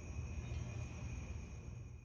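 A steady low hum with a thin, constant high-pitched whine over it: background room tone with no distinct tool sounds.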